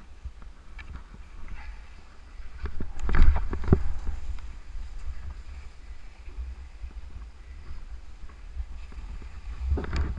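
Skis scraping and chattering over firm, uneven snow during turns on a steep descent, over a steady low rumble of wind on the camera's microphone. The loudest scrapes and knocks come about three seconds in and again near the end.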